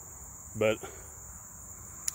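Steady, high-pitched chorus of field insects, an unbroken trill that holds at one pitch throughout.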